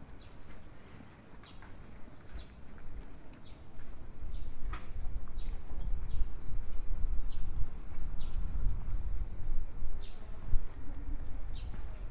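Footsteps on pavement at a walking pace, with a low rumble that builds about four seconds in.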